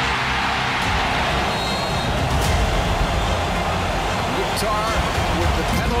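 Stadium crowd noise, a steady roar, over background music with a steady low bass line.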